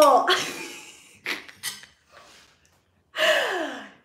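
A woman's breathy, falling exclamation in dismay, a couple of short breathy puffs, then a second falling gasp-like sigh near the end.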